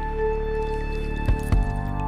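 Slow, calm relaxation music of long held tones, with a drop-like, squelchy texture. Two short low thumps come about a second and a half in.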